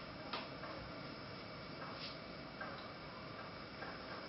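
Graphite pencil working on drawing paper, faint, with a few sharp ticks as the pencil taps and strokes, over a steady hiss.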